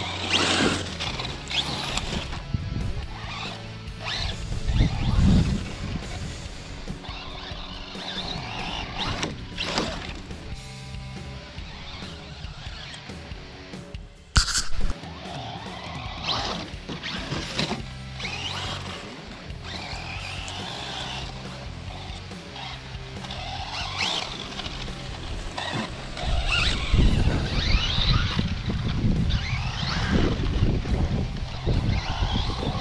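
Electric motor of a Traxxas Slash RC short-course truck whining up and down in pitch as it accelerates and lets off around the track, over background music. A single sharp knock comes about 14 seconds in.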